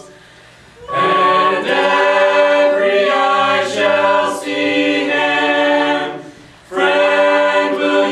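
Mixed a cappella vocal ensemble of men and women singing a gospel song in harmony. The singing stops for a breath at the start, comes back in about a second in, and breaks off briefly again near the six-second mark.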